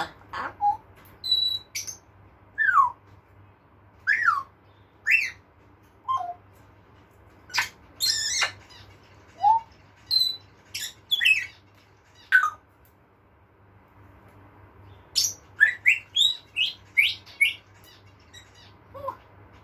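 African grey parrot whistling and calling in short separate notes, several of the whistles sliding down in pitch, mixed with sharp clicks, with a quick run of calls near the end.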